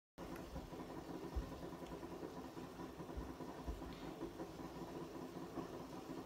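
Hooded hair steamer running with a faint steady hum.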